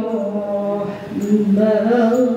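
A woman's voice chanting Quran verses in melodic recitation through a microphone, long held ornamented notes; she breaks briefly for breath about a second in and resumes with a rising phrase.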